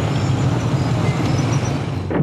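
Steady street traffic noise: a continuous low rumble of many vehicles in congested city traffic.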